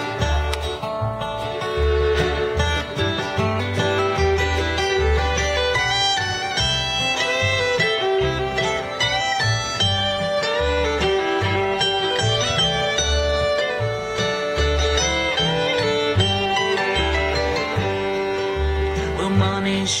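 Live acoustic string band playing an instrumental break: a fiddle carries the melody over strummed acoustic guitar and mandolin, with a plucked upright bass keeping a steady beat. Singing comes back at the very end.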